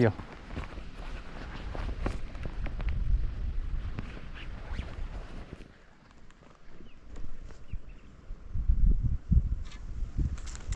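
Wind buffeting the microphone in a low, gusting rumble, with a few light rustles and steps on dry reeds and sand.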